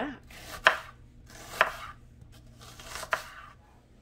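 Chef's knife slicing an onion thinly on a wooden cutting board: three sharp knocks of the blade on the board, about a second apart, each led in by a brief rasp as the blade goes through the onion.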